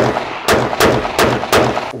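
Precision rifle firing corroded rounds: five sharp shots in quick succession, each trailing off in echo from the range's concrete walls.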